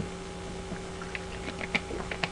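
Quiet room tone with a steady low electrical hum and a few faint, scattered light clicks.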